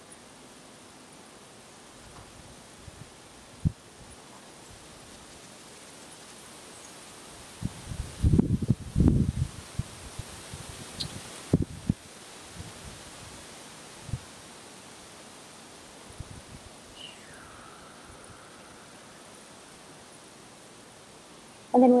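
Faint steady outdoor background hiss. About eight seconds in, a couple of seconds of low rustling and bumps, with a few single clicks scattered through and a faint falling whistle later on.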